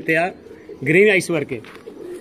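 Domestic pigeons cooing softly in their cages, under two short, louder phrases of a man's speech.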